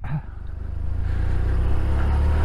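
Touring motorcycle engine pulling away: a low, pulsing rumble that grows louder over the first second, then holds steady.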